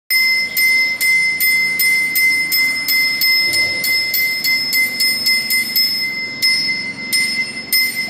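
A small metal hand bell rung in a steady rhythm, about two to three strokes a second, its high ringing tone carrying on between strokes.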